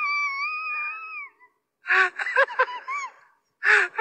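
High-pitched, wavering laughter from the clip's laughing sound track. It breaks off about a second in, and shorter bursts of laughter follow in the middle and near the end.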